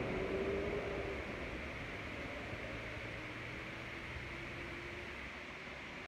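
Steady outdoor background noise, an even hiss with a faint low hum, slowly fading out.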